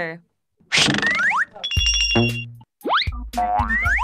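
Cartoon sound effects from a children's vocabulary video. After a short gap there is a swoosh with rising slides, then a bright chime about two seconds in, then springy boing sounds near the end.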